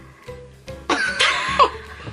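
Background music with a burst of a woman's laughter about a second in, high and sliding in pitch.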